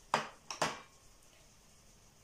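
Two clinks of ceramic plates and bowls being handled and set down on a wooden table, about half a second apart.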